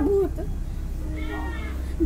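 A cat meowing once, a single drawn-out call that rises and then falls in pitch, starting about a second in.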